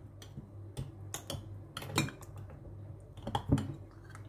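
Metal spoon stirring a thick milk, yogurt and chia seed mixture in a glass mug, with irregular light clicks of the spoon against the glass.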